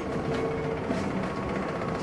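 Steady mechanical background hum with a few faint held tones and no distinct knocks or other events.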